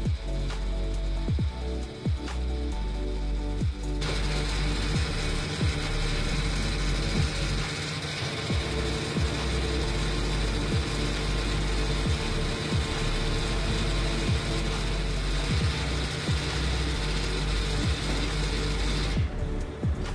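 Background music throughout, with a steady mechanical whirring from the robotic refuelling arm's motors as it carries the fuel nozzle to the car; the whirring starts abruptly about four seconds in and stops just before the end.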